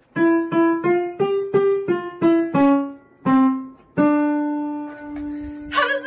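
Digital piano playing a simple one-note-at-a-time melody, about nine short notes stepping up and back down, then one long held note that slowly fades.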